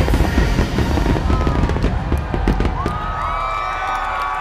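Fireworks finale: a dense barrage of bangs and crackling over a deep rumble, thinning out about two and a half seconds in. Near the end the crowd starts cheering and whooping.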